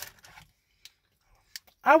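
Mostly quiet, with a couple of faint short clicks, then a man's voice starting to speak near the end.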